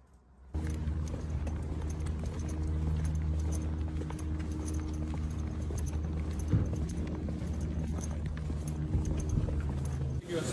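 Footsteps of two people walking on asphalt pavement over a steady low engine hum from traffic. The sound starts suddenly about half a second in, and the hum is the loudest part.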